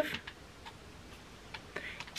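A quiet pause in room tone, with a few faint, irregularly spaced ticks.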